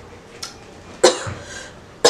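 A woman's sharp, dry cough about a second in, fading out quickly; she is sick.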